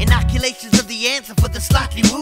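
Hip hop track: a male rapper delivers a verse over a beat of regular drum hits and a deep bass note.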